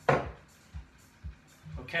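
A glass measuring cup of juice set down on a tabletop with one sharp knock at the start. It sits over background music with a steady low beat about twice a second.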